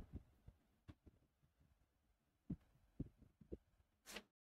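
Near silence: room tone with a few faint, soft thumps scattered through it.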